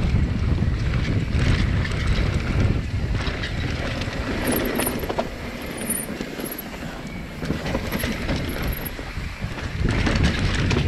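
Riding noise of a mountain bike on a dirt singletrack: wind buffeting the camera microphone, tyres on dirt and the bike rattling over bumps. It eases off for a couple of seconds about halfway, then picks up again.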